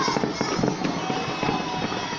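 Fireworks going off over a city, a dense run of many pops and crackles in quick succession.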